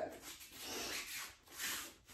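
Faint, soft rustling of a person moving through a martial-arts drill, clothing and bare feet shifting, in two gentle swells.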